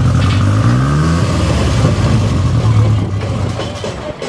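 Škoda 130 rally car's rear-mounted four-cylinder engine, close by, revved once: the pitch climbs about half a second in, then drops back to a steady idle.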